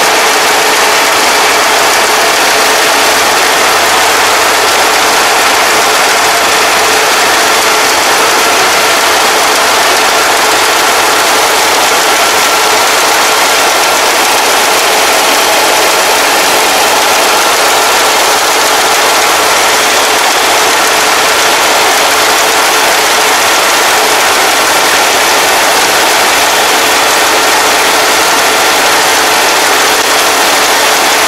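Kubota ARN460 rice combine harvesting, its diesel engine and threshing machinery running steadily under load as a loud continuous drone with a faint steady whine.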